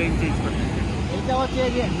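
A man speaking over a steady low mechanical rumble from airport apron machinery.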